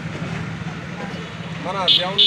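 Faint voices of a small gathering over a steady low hum, with a man starting to speak close up near the end.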